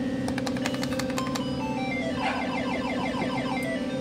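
Electronic beeping tune of a coin-operated fruit slot machine as its lights chase around the board after the play button is pressed: a steady buzzing drone, a quick run of clicks in the first second or so, then a string of short beeps stepping down in pitch as the spin slows.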